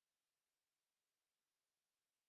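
Near silence: only a faint, steady hiss.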